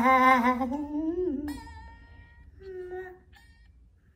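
A man singing without words: one long, wavering note that slides upward and breaks off about a second and a half in, then a shorter, quieter note near the end.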